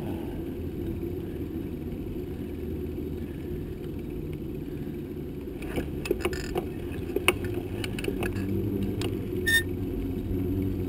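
Bicycle rolling along an asphalt road: a steady low rumble of tyres and wind, with a run of sharp clicks and rattles from the bike in the second half and a brief high squeak near the end.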